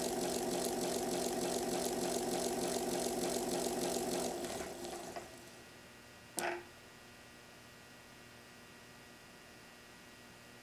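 A pair of plastic bevel gears spun fast under load by the gear tester's motors: a steady whir with a fast, even rattle of the teeth meshing. It winds down and stops about five seconds in, and a single short clunk follows about a second later. The teeth are chewed up, with plastic shavings torn from them.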